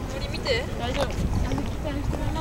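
Several people's voices talking among a crowd, over a steady low outdoor rumble.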